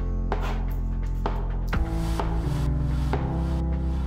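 Background music with sustained, changing notes over a regular beat.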